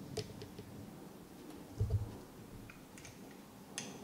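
Faint, scattered small clicks and taps from handling a dropper and a glass test tube while a single drop is added, with one dull low thump just before the 2-second mark.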